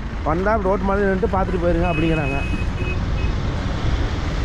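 A man's voice talking for the first half, then a few short, high electronic beeps around the middle, over a steady low rumble of vehicles.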